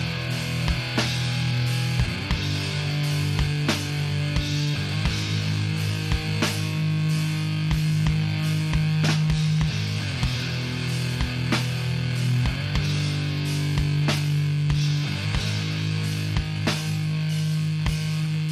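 Death metal band playing live: heavily distorted electric guitars and bass hold slow, sustained chords that change every two to three seconds, under drum and cymbal hits. The piece is instrumental, with no vocals.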